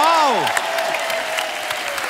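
Studio audience applauding, with a single voice calling out over it: a quick rise and fall, then one long, slowly falling held note.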